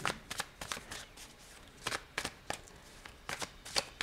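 A deck of tarot cards being shuffled by hand: a run of soft, irregular clicks and flicks.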